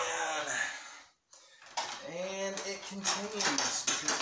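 Clinking and rattling of a fluorescent ceiling light fixture's metal housing being handled, over a man's wordless voice. Everything cuts out briefly about a second in.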